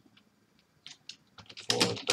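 Typing on a computer keyboard: a few scattered keystrokes, then a quicker, louder run of typing in the last half second.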